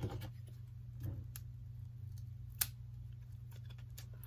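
A few faint, scattered clicks and ticks of fingers picking at the tape on a plastic spool of thin green ribbon, over a steady low hum.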